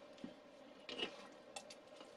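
Red silicone spatula stirring wet bread dough in a bowl: faint scraping and wet sticky sounds, with light taps against the bowl about a quarter second in and again around one second in.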